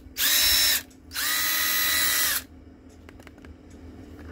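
Makita 18V LXT cordless impact driver, powered by a Parkside X20 battery through an adapter, spinning freely with no load. It gives two trigger pulls: a short burst, then a longer run of about a second and a half. Each time the motor whines up to speed and winds down when released.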